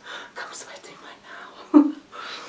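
A woman's breathy, whispered voice with no clear words, followed by one short voiced sound near the end.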